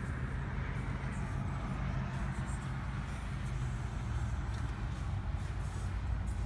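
2013 BMW X3 28i's turbocharged 2.0-litre inline four-cylinder idling steadily in park, heard from inside the cabin as an even low hum with a faint hiss above it.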